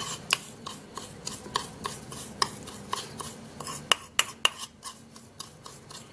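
Metal spoon stirring a gritty paste of crushed aspirin and oil in a small bowl, clicking against the bowl's side about three times a second.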